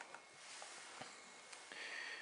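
Quiet room tone with a few faint clicks from multimeter test probes being handled, and a short breath near the end.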